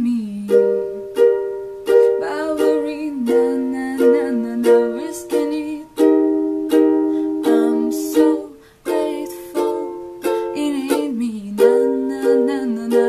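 Ukulele strummed in a steady rhythm, chords struck again about every half to three-quarters of a second.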